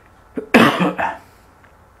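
A man coughing: a short cough about half a second in, in two harsh bursts.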